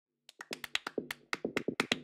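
A rapid run of sharp percussive clicks or taps, about eight a second and slightly uneven, starting a moment in, each with a brief ringing tail: the percussive opening of an electronic music intro.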